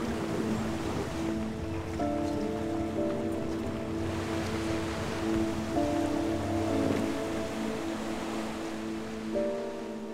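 Background score of sustained chords, changing pitch about every few seconds, over a steady wash of sea and wind noise.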